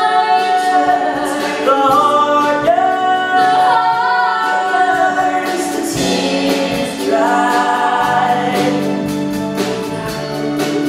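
A woman singing a slow stage-musical ballad, holding long, wavering notes over instrumental accompaniment.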